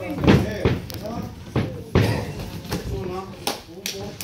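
Several sharp thuds and slaps from a boxing bout in the ring, the loudest about a third of a second in and at the two-second mark, with voices calling out between them.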